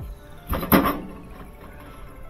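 Pliers clicking against the metal of a washer clutch assembly: two quick sharp clicks a little over half a second in.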